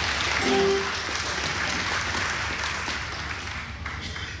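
Congregation applauding, a dense steady clapping that slowly gets quieter, with one short pitched sound about half a second in.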